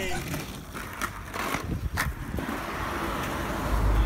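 Skateboard tail scraping on asphalt as the board is dragged by its nose, with a few sharp knocks of the board on the ground.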